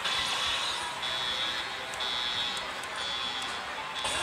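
Pachislot machine and hall din: electronic buzzing tones that come round about once a second, with small clicks over a steady noisy background.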